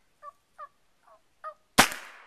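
A man's voice making short bleating 'meh' calls, several in a row, a hunter's mouth call for getting a deer to stop moving. Near the end a single sharp rifle shot cracks out, much louder than the calls.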